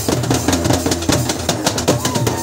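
Loud, fast drumming on double-headed drums beaten with sticks: a quick, even run of strokes, several a second.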